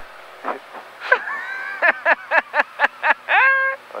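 A person laughing: a drawn-out laugh, then a quick run of short 'ha' bursts, about five a second, ending in a longer one.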